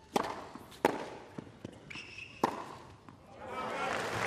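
Tennis ball struck by rackets three times in a short rally on a hard court, starting with the serve, with lighter ball bounces between the strikes. Crowd applause swells near the end as the point is won.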